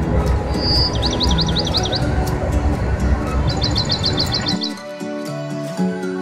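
Soft background music over the steady low rumble of a moving vehicle heard from inside, with two quick runs of bird chirps in the first part. About four and a half seconds in, the rumble cuts off, leaving the music alone.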